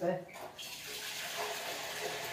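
Water running steadily from a kitchen tap, starting about half a second in.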